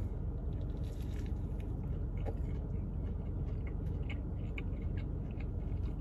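A person biting into a Spam biscuit and chewing it with the mouth closed: faint scattered wet clicks over a steady low hum.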